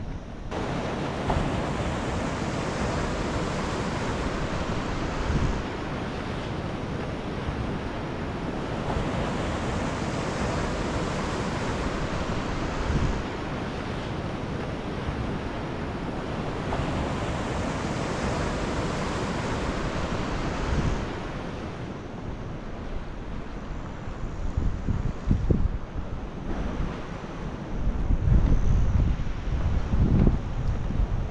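Ocean surf breaking on a sandy beach, a steady wash that swells and eases every several seconds. In the last few seconds gusts of wind buffet the microphone.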